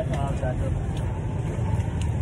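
A steady low rumble with faint voices in the background during the first half-second.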